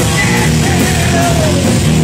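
Heavy metal band playing live and loud: electric guitar, bass and drums with cymbal hits, and the singer's voice over them. Midway a held note slides down in pitch.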